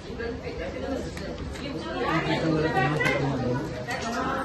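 Several people chatting over one another, a mixed conversation with no single clear speaker, growing louder about halfway through.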